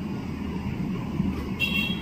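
Steady low background rumble with no speech, and a faint, brief high tone near the end.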